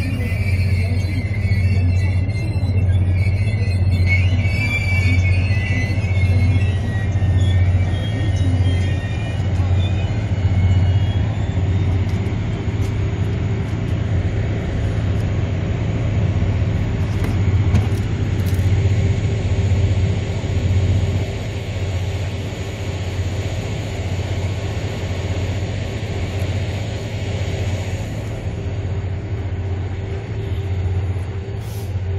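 A diesel-hauled Mugunghwa-ho passenger train standing at the platform, its engine giving a steady low hum. A melody plays over it and fades out in the first ten seconds or so.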